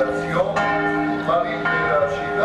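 Church bells ringing for a festival, several bells struck at uneven intervals so that their tones overlap and hang on.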